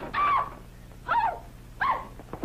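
A woman's short, high-pitched cries, three of them about a second apart.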